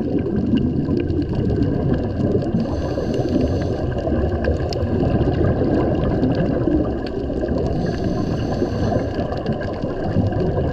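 Muffled underwater rumble of moving water heard through a diving camera, with a scuba regulator's breath hissing twice, about five seconds apart.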